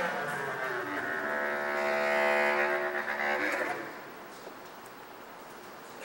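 Bass clarinet: the tail of a falling slide at the start, then one long held note from about a second in that swells and fades out just before four seconds.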